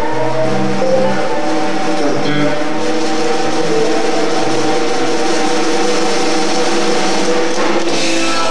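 Live rock band playing a loud, steady passage on electric guitars, bass and drum kit, with no vocals prominent.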